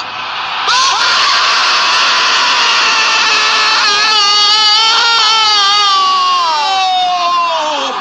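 A crowd roar breaks out about a second in as a free-kick goal goes in. From about four seconds in, a commentator's long, held goal scream slowly falls in pitch and ends just before the end.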